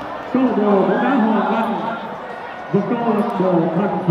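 A man talking, in two stretches of speech with a short break in between.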